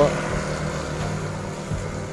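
A motor scooter passing on a wet road, its engine and tyre hiss slowly fading as it moves away.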